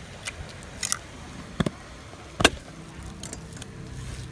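Kitchen utensils knocking and clinking against a clay mortar and plastic tubs while papaya salad is being made: four or five short, sharp knocks, the loudest about two and a half seconds in, over a steady low background.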